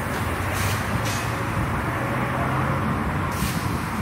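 A car engine running steadily with a low hum, and three short high hisses over it.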